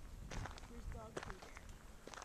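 Quiet outdoor ambience: a low rumble with a few soft crunches of footsteps on a gravel path, and a brief faint pitched sound about a second in.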